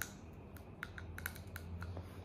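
Roasted pistachios being shelled by hand and eaten: a string of small, irregular clicks and cracks from the shells.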